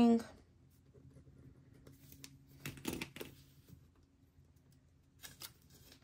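Quiet paper handling on a planner page: faint pen scratching and rustling, a short louder rustle about three seconds in, and a few light clicks near the end as a small sticker label is laid on the page.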